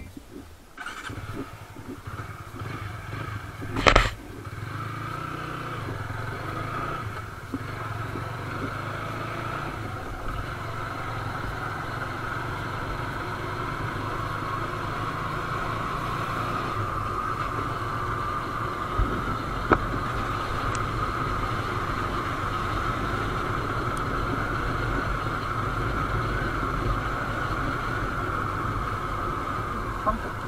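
Motorcycle riding along a lane, its engine running steadily with wind and road noise. A sharp knock about four seconds in.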